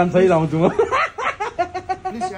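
People talking, with snickering and chuckling.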